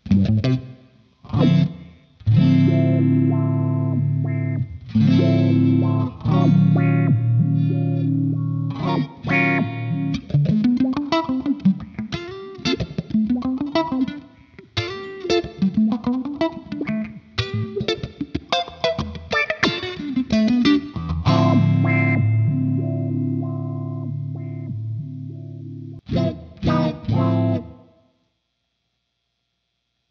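Electric guitar played through a GFI System Rossie filter pedal: sustained chords, then a stretch of fast, choppy funk strumming with repeated rising filter sweeps, then sustained chords again and a short choppy burst near the end.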